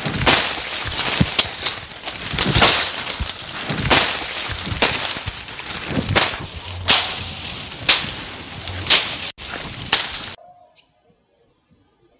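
Machete slashing through dry grass and brush by hand, a sharp swishing cut about once a second. The strokes stop abruptly about ten seconds in, leaving near quiet with a few faint bird chirps.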